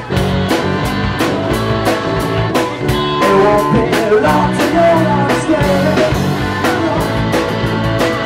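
Live rock band playing: electric guitar, bass guitar, a Roland VK-7 keyboard and a drum kit keeping a steady beat.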